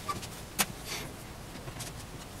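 Hands handling modelling clay and tools on a wooden board: one sharp tap about half a second in, then a short rustle, over faint room hum.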